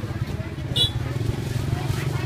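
A small engine running nearby with a low, steady rumble, under background voices. One short, high-pitched clink comes just under a second in.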